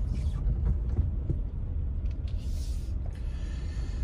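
Low, steady engine and road rumble heard inside a car's cabin as it drives slowly, with a brief faint hiss about two and a half seconds in.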